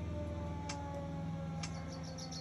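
Civil-defence air-raid siren winding down, its tones slowly falling in pitch, with a couple of faint clicks.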